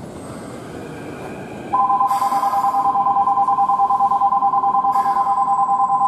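A station platform's electronic bell starts ringing about two seconds in: a loud, rapidly pulsing two-note ring that keeps going. Before it there is only low rail-yard rumble.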